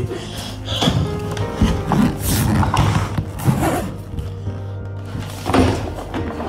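Background music, with a few brief knocks and rustles from a suitcase being handled and opened.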